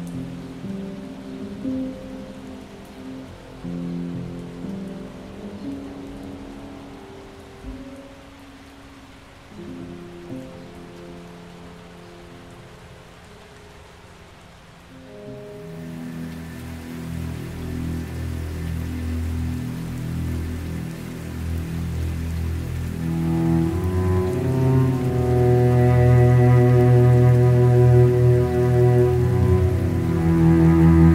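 Steady rain sounds mixed with slow, soft piano notes. About halfway through, a new piece begins with bowed cello and low strings that grow steadily louder toward the end.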